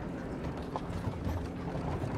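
Horse hooves clopping and carriage wheels rattling over a street, with a steady low rumble under scattered clicks.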